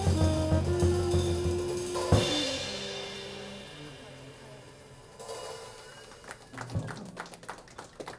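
A jazz trio of saxophone, upright bass and drum kit ends a tune. Held saxophone and bass notes lead into a final accent on the drums about two seconds in, and the cymbal rings out and fades away over the next few seconds. A scattering of sharp claps follows near the end.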